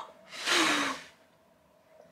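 A single quick puff of breath blown through pursed lips to send an eyelash off a fingertip, lasting about half a second with a slight voiced hoo under the hiss.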